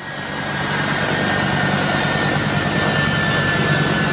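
Jet engines of a U.S. Air Force C-17 Globemaster III running loud and steady as the aircraft moves along the runway, a high whine held over the engine noise. The sound fades up over the first second.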